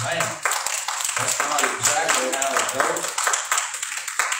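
A small congregation clapping, with voices over the clapping.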